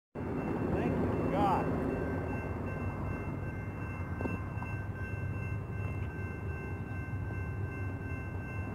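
Steady low rumble of outdoor traffic noise with a few thin steady high tones running throughout; a brief voice is heard about a second and a half in.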